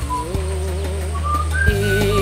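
Background film music: a slow, wavering melody line over a steady low sustained bass tone.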